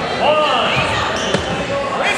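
Several voices shouting and calling out from the sidelines of a wrestling match, with the echo of a gym. A sharp knock comes a little past halfway.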